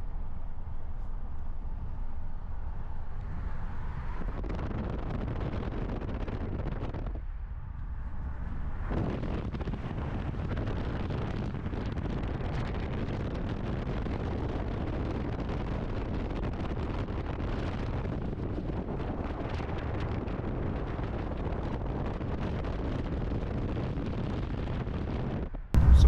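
Car cruising at highway speed: steady tyre and road rumble with wind noise buffeting the microphone. The noise thins briefly about seven seconds in, then comes back with more hiss.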